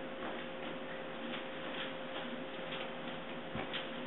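Faint light ticks, about two a second, over a steady hiss and a faint hum.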